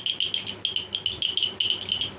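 A small rattle shaken quickly and steadily, giving an even run of bright clicks about eight a second.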